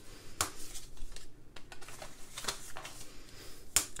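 Bone folder rubbed along score lines on cardstock to burnish the folds, with the card handled on a wooden tabletop: light rustling broken by about five brief scrapes and taps.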